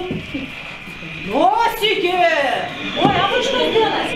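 Speech: a person's voice talking, after a short lull in the first second.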